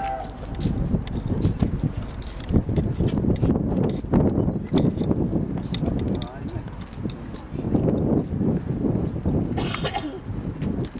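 Indistinct voices of people talking near the microphone, over a low outdoor rumble, with a short sharp burst of noise near the end.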